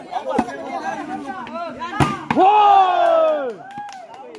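Spectator chatter, then a sharp smack of a volleyball being hit about two seconds in, followed at once by a long, loud shout from one voice that falls in pitch.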